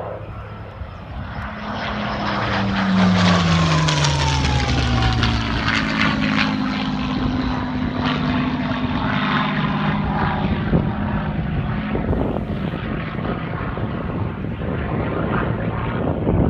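Hispano Buchón (Spanish-built Bf 109) piston fighter's Merlin V12 engine and propeller on a low pass. The engine sound builds over the first three seconds, its pitch drops as the plane goes by, and it carries on steadily as the plane flies away.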